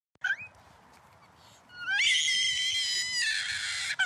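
Toddler screaming in fright: a brief rising squeal, then, a little before halfway, one long high-pitched scream held steady for about two seconds.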